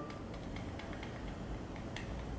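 Quiet room tone with a few faint, small ticks and rubbing: a makeup sponge being worked against a compact's powder.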